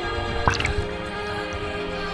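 Background music with steady sustained tones, and a few short drip-like sounds, the clearest about half a second in.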